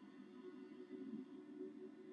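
Electric guitar played softly, faint sustained notes ringing in the low-middle register.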